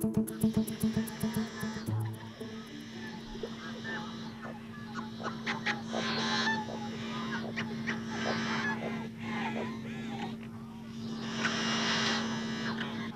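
Many wild birds calling and chirping at dawn, short overlapping calls coming thickest in two spells, over a steady low hum.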